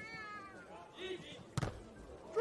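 A short, high-pitched call from a player near the start, then a single sharp slap of a hand striking the beach volleyball about one and a half seconds in.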